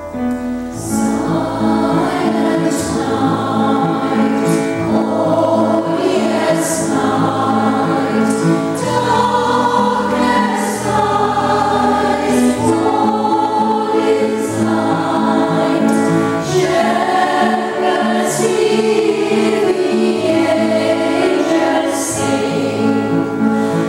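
Women's choir singing in harmony with piano accompaniment; the voices come in just after the start.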